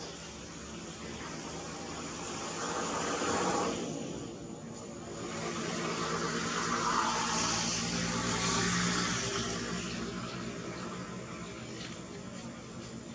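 A motor vehicle's engine rumbling past in the background, swelling twice, louder the second time.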